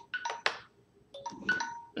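A 15-minute timer's alarm going off: a short melodic ringtone of a few chime notes, repeating about every second and a half.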